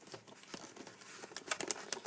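Clear plastic clamshell container being pried open by hand, the thin plastic crinkling and crackling, with several sharper snaps in the second half.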